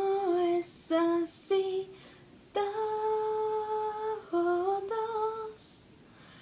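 A young woman's unaccompanied voice singing a wordless melody in held, steady notes, the longest lasting about a second and a half, with short breaths between phrases.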